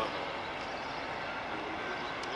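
General Motors G12 diesel-electric locomotive running light at low speed, its 12-cylinder EMD 567 two-stroke diesel engine running steadily.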